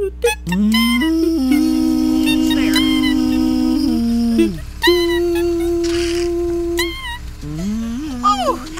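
A woman's long, drawn-out groans of effort as she hauls herself up and out of a car's back seat: two long held notes, the first lasting about three seconds and the second about two, after a short slide up in pitch.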